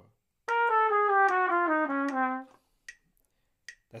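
Trumpet playing a quick double-time descending bebop line over B-flat 7, about a dozen short notes in two seconds. It starts on the ninth, passes through a chromatic half step to the tonic, and runs down the dominant bebop scale to the third.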